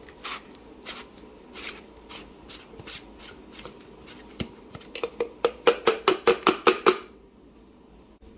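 Plastic clicks and taps as a Ninja personal blender cup is handled and its blade base unscrewed. A few scattered clicks give way to a quick run of about ten sharp clicks between about five and seven seconds in.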